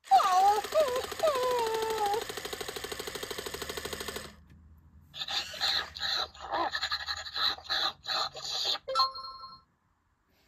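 WowWee Dog-E robot dog's built-in speaker playing its feeding sound effects after its nose is pressed: gliding, pitched robotic yelps over a buzzing, pulsing electronic sound for about four seconds, then a string of short choppy electronic noises ending in a brief beep near the end.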